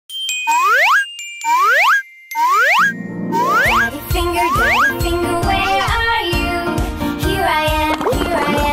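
Three cartoon sound effects, each a quick rising pitch glide, about a second apart, followed by the start of cheerful children's music with a steady beat about three and a half seconds in.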